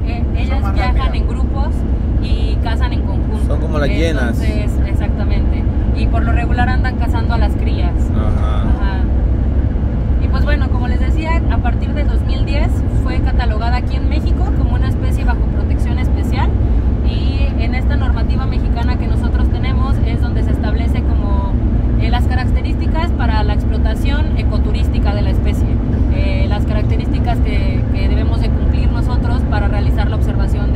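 Steady low road rumble inside a moving vehicle's cabin, with a woman talking over it throughout.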